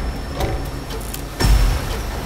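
Trailer sound design: a dense, noisy rumble with a heavy low hit about one and a half seconds in.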